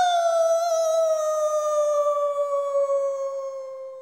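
A young woman's voice wailing one long drawn-out "no" in despair, the pitch sinking slowly and the cry fading near the end.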